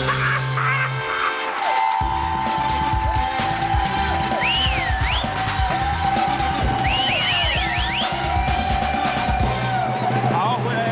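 Upbeat TV show opening theme music, with a long held high note and rising-and-falling swoops about halfway through and again near the end.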